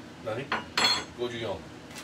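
Kitchen utensils and dishes clinking and clattering on a counter: a sharp clink about half a second in, then a louder clatter just before the middle.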